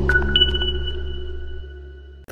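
Electronic logo-sting music dying away: a low held bass note under two high, ping-like held tones that enter within the first half-second, all fading out together.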